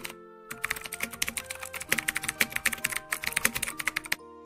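Keyboard typing sound effect: a fast run of key clicks that starts about half a second in and stops at the end, set over background music with held notes.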